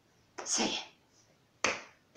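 Two short swishing sound effects, made by a storyteller to imitate pushing through a field of wheat.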